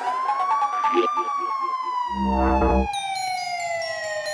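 Electronic dance track in a breakdown: a siren-like synth tone glides up for about a second, then slides slowly down, over a run of short repeated notes. About halfway through, a short burst of deep bass comes in and drops out.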